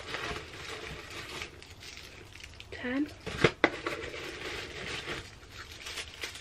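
Rustling and crinkling of packaging as a hand rummages in a cardboard advent calendar box and pulls out a wrapped gift. Two sharp taps come about three and a half seconds in, just after a short hum of a voice.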